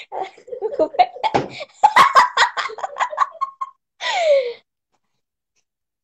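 A girl laughing hard in rapid bursts, ending about four seconds in with a high-pitched squeal that falls in pitch, after which the sound cuts off.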